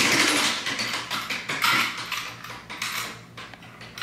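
Hand-made prize wheel spinning, its rim pegs ticking against the pointer after a brief rush of noise at the start; the ticks come fast at first and space out as the wheel slows down.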